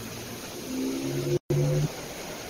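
A voice holding a long, steady hesitation hum while searching for words. It is cut by a split-second total dropout in the video-call audio.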